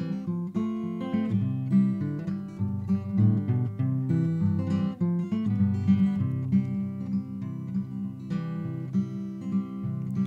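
Steel-string acoustic guitar played solo, the right-hand fingers strumming and picking a steady folk chord pattern in an instrumental break with no singing.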